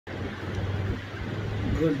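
A steady low hum with a background rumble, then a man's voice beginning to speak near the end.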